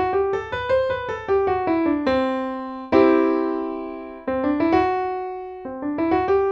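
Digital piano played by hand: a short melodic run of single notes stepping up and down. A chord is struck about three seconds in and left to ring, then more single notes and another chord follow. The phrase is played to illustrate the Lydian mode of the song.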